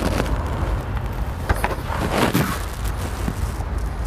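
Steady low outdoor background rumble, with a few short rustling and clicking handling noises around the middle.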